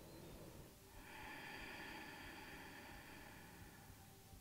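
Near silence, with one faint, long breath through the nose starting about a second in.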